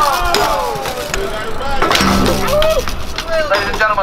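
A crowd of BMX riders shouting and calling out over one another, with several sharp knocks and clatters from bikes on the pavement.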